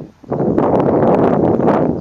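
Wind buffeting the microphone, loud after a brief dip near the start, with the harsh, grating song notes of an Oriental reed warbler cutting through it.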